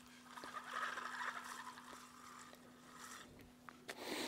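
Faint whirring of a spinning fishing reel being cranked as backing line winds onto the spool, with a few small ticks, over a steady low hum.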